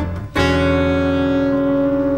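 A jazz band's closing chord. A short stab is cut off, then a chord struck about a third of a second in rings on and slowly fades as the tune ends.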